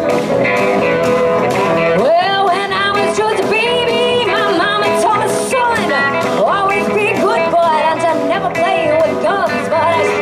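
A live band playing a song: a woman sings with wide, swooping slides in pitch over strummed acoustic guitar and drums.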